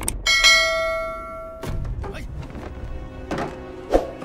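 A click, then a single bright bell ding that rings out for more than a second before fading, over trailer music. A sharp hit lands just before the end.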